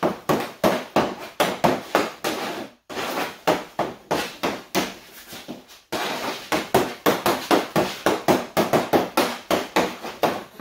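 Hockey stick blade knocking a puck back and forth on a concrete floor in quick stickhandling, about three to four clacks a second, with two short breaks. The clacks ring in a small room.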